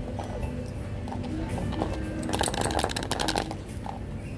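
A small toy-car box shaken by hand, the die-cast car inside rattling in a quick run of clicks for about a second, about two seconds in. Faint background music plays throughout.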